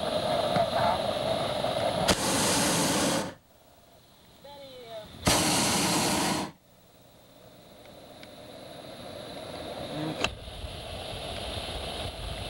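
Two blasts of a hot air balloon's propane burner, each lasting a little over a second, about two seconds apart and starting and stopping abruptly. Later a rushing noise builds slowly, with a single click about ten seconds in.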